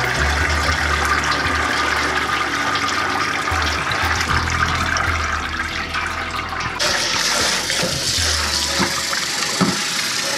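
Beef broth pouring from a large stainless stockpot through a metal strainer into a pot, a steady gush of liquid. About seven seconds in it gives way to tap water running into a metal stockpot in the sink, a brighter, hissier splash.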